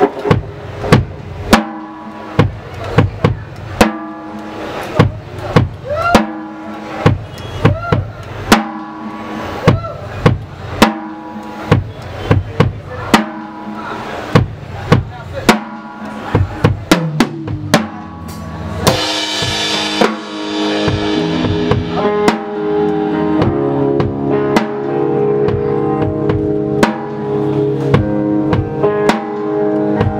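Rock band playing live, heard from beside the drum kit: drum hits on a steady beat about twice a second over held guitar and bass notes. About 19 seconds in a cymbal crash comes, and the band goes on fuller and louder.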